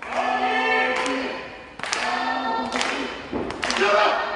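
Loud drawn-out vocal calls at a wrestling match, each held about a second, repeated three or four times, with sharp slaps and thuds in between.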